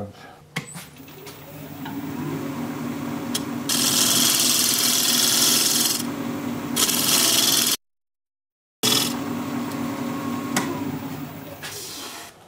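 Jet 1840 wood lathe spinning up with a low hum, then a spindle gouge cutting the spinning burl cherry blank in two loud passes of about two seconds and one second. The sound cuts out for about a second, the cutting returns briefly, and the lathe's hum fades toward the end.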